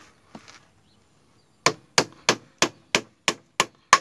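A hammer striking the metal front-wheel hub and suspension link of a Hero Pleasure scooter. After one light tap there is a run of eight sharp blows, about three a second, starting about halfway in.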